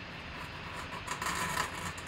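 Cardboard rubbing and scraping against cardboard as a flat photo box is opened and its sheets slid apart, growing louder about a second in.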